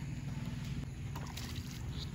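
Wind rumbling on the microphone, with a few light splashes of feet stepping through shallow floodwater on grass about a second in.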